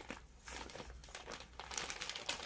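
Faint rustling and crinkling of crepe suit fabric trimmed with metallic gota ribbon work as it is lifted and shifted by hand, in a few soft, uneven bursts.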